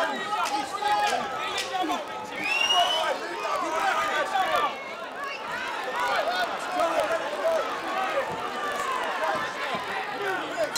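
Arena crowd shouting and chattering, many voices overlapping, with a single rising high call a few seconds in.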